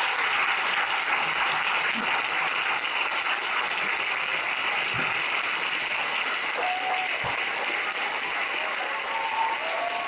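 Audience applauding: steady, dense clapping that eases slightly in loudness over the seconds, with a few voices in the crowd.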